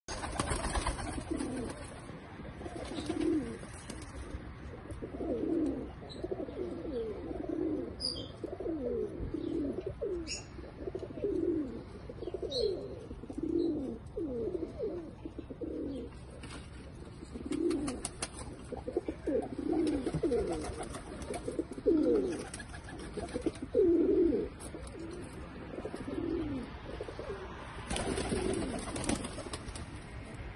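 A flock of domestic pigeons cooing, many overlapping coos repeating throughout.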